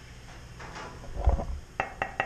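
A dull thump, then a few quick, light finger taps on the 7005 aluminium tube of a mountain bike frame near the end.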